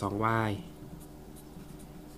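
Felt-tip marker writing on paper: a faint scratching as a number and letter are written.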